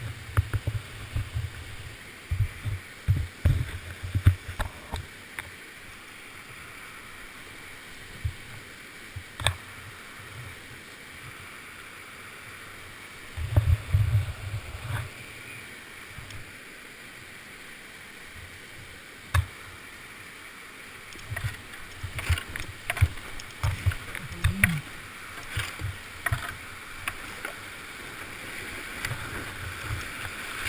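Whitewater creek rapids rushing steadily, heard from a kayaker's helmet camera, with clusters of low thumps and a few sharp knocks as the plastic kayak and paddle bump over shallow rock.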